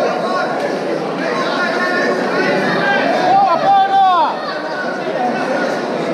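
Many spectators talking and calling out at once in a large echoing hall, with one voice shouting louder, its pitch rising and falling, a little past the middle.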